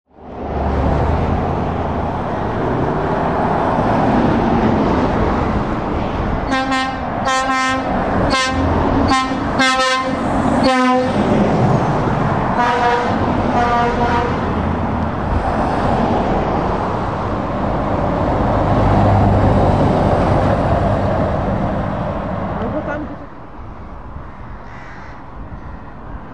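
Trucks and cars passing on a road with a steady traffic rumble, and a truck's air horn sounding about six short blasts, followed soon after by a few more. The traffic noise drops lower near the end.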